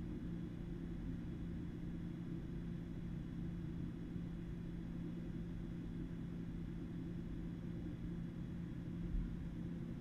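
Quiet, steady low hum with faint hiss: background room tone with no speech.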